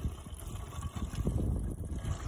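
Blue screenwash pouring from a plastic jug into a van's washer-bottle filler spout, with wind rumbling on the microphone.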